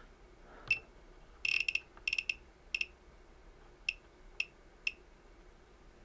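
Riden RD6018 power supply's built-in buzzer giving short, high-pitched key beeps as its controls are operated to step the date setting: a quick run of beeps, then single beeps about half a second apart.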